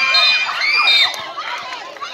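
Crowd of spectators shouting and cheering at a basketball game, many high voices overlapping, easing off a little near the end.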